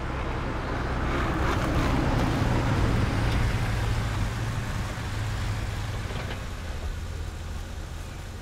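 A car driving past, its engine and tyre noise rising to a peak about two to three seconds in and then easing off over a low steady engine drone.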